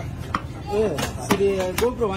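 Large fish-cutting knife chopping through fish on a wooden log block, about four sharp strokes.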